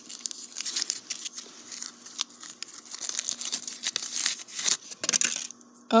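Reese's Peanut Butter Cup wrapper being torn open and crinkled: a run of irregular crackles and rustles that stops shortly before the end.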